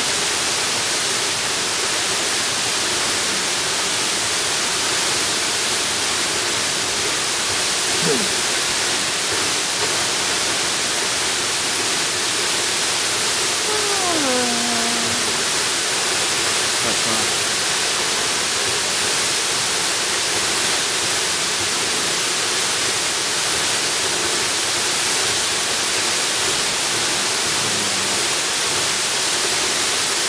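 Tall waterfall: a steady, unbroken rush of falling water, even in level throughout.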